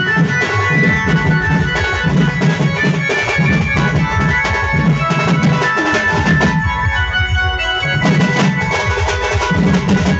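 A Sambalpuri dulduli baja band playing loud: fast stick drumming on dhol-type drums under a sustained melody line. The drums briefly drop away for about a second a little past the middle, then come back in.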